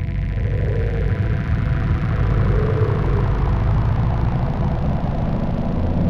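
A deep, steady rumble with a hissing wash above it, slowly building in loudness: a designed sound effect on the film's soundtrack under an animated opening title.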